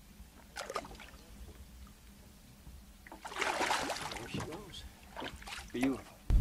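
Water splashing and sloshing beside an aluminum boat as a walleye is released by hand over the side, with a small splash early and a louder one about three seconds in. A short vocal sound comes just before the end.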